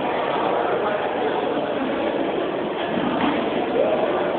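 Electric Align T-REX 700 RC helicopter running steadily, its rotor and electric motor giving a continuous whirring noise, with people talking faintly in the background.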